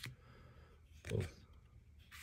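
Quiet room tone with one short spoken word about a second in.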